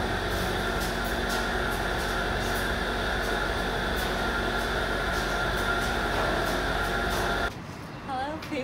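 Industrial-size clothes dryers running: a steady mechanical hum and whir with faint, irregular ticks over it, cutting off abruptly near the end.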